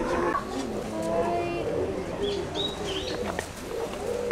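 Birds calling: a few short, high chirps about halfway through, over a low murmur of voices.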